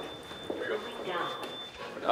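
Footsteps in a hard-floored corridor under faint voices, with a thin, high, steady whine that stops near the end.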